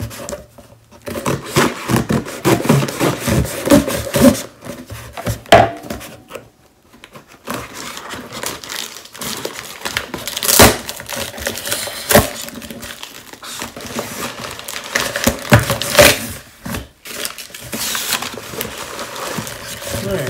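A cardboard shipping box being cut and torn open by hand: packing tape ripping, cardboard flaps rustling and scraping, with a few sharp rips or knocks.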